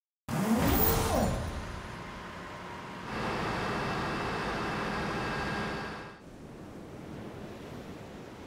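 Logo sound effect with an engine-like rev: a loud start with a rising pitch glide in the first second, then a steadier engine-like run with a thin whine from about three seconds in, dropping to a faint even hiss about six seconds in.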